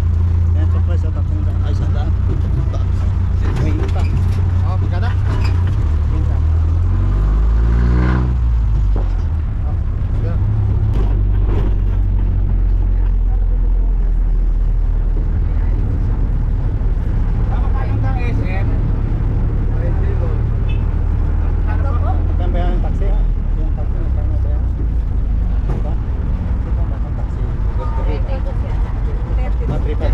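Jeepney's engine and road noise heard from inside the open passenger cabin, a loud steady low rumble while under way. About seven seconds in the engine revs climb sharply in pitch as the jeepney accelerates, then settle back to a steady drone.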